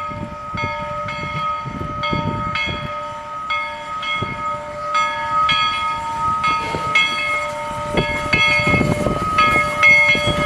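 Two-foot gauge steam locomotive No. 7, a Forney tank engine, working steadily as it approaches and passes with a short mixed freight train. Its exhaust chuffs come about twice a second and grow louder near the end, over a steady high-pitched whine.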